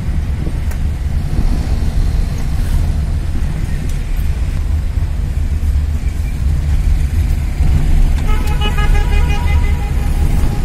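Steady low engine and road rumble heard from inside a vehicle's cab in slow traffic. Near the end a horn sounds in a quick run of short toots.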